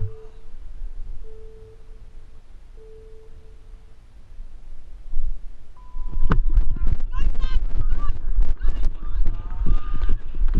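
Three short electronic beeps of one low pitch about 1.4 s apart, then a single higher beep about six seconds in, the pattern of a race start countdown. Right after it, a loud steady rumble of board wheels on asphalt and wind buffeting the helmet-mounted microphone as the riders gather speed, with voices shouting.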